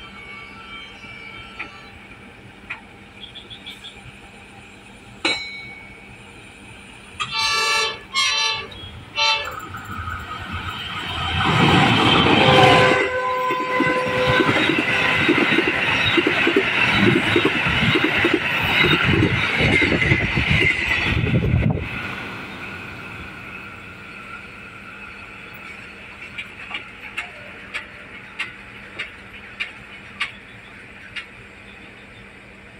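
A train horn sounds three short blasts, the last the shortest. Then the Sri Bilah Utama passenger train runs past close by for about ten seconds, its wheels loud on the rails, and the noise cuts off sharply as the last coach goes by.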